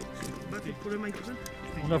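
Background music and indistinct voices, with sharp irregular clicks of footsteps on a gravel track.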